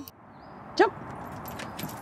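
Dogs jumping down out of a car on command, with a few faint clicks and jingles of paws and collar tags over a steady outdoor hiss.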